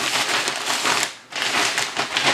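Plastic shipping mailer and tissue paper rustling and crinkling as a wrapped shirt is slid into the mailer, with a short pause a little past halfway before the rustling resumes.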